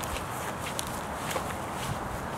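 Footsteps of two people walking across a grass lawn: soft, irregular steps over a steady background hiss.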